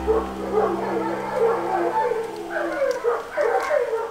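A dog whining and howling in long, wavering, pitch-bending cries, over a held low chord that fades out about two-thirds of the way through.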